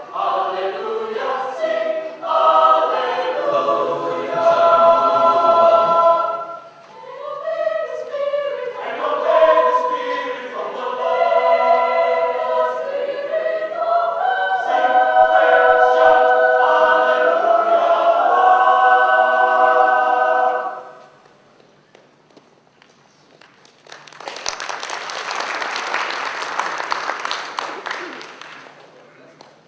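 A choir singing a slow piece in held chords, which ends about 21 seconds in; after a short pause, applause for the last few seconds.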